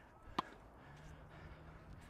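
A single sharp strike of a tennis racket on the ball about half a second in, a slice in a baseline rally.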